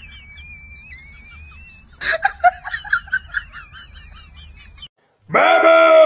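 High-pitched giggling laughter, preceded by a thin, wavering whistle-like tone. After a sudden cut about five seconds in, a loud, sustained, pitched vocal cry.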